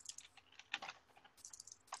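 Faint, irregular clicks of typing on a computer keyboard.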